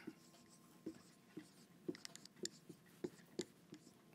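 Marker writing on a whiteboard: a faint, irregular run of short squeaks and taps as each letter is stroked out.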